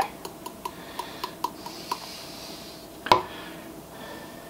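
Light metallic ticking, about five taps a second for two seconds, as a small metal sieve is tapped to shake powdered sugar through it, then a single louder metallic clink about three seconds in.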